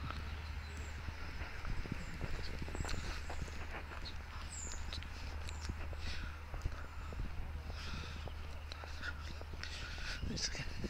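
Footsteps of a person walking along a path, with a steady low rumble of wind on the microphone and a few faint high chirps.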